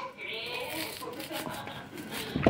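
A sharp kitchen knife scraping kernels off a fresh ear of sweet corn (elote), a rasping scrape with small ticks.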